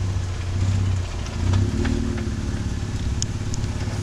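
Jeep Wrangler Rubicon's engine running at a slow crawl with a steady low drone as it climbs over a boulder, with a few faint clicks scattered through.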